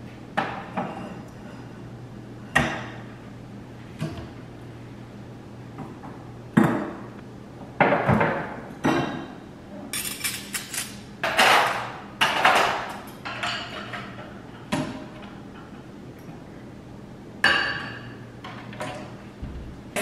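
Dishes being put away in kitchen cabinets: scattered clinks and knocks of dishes set down on shelves, some with a short ring, and a busier stretch of clatter about halfway through.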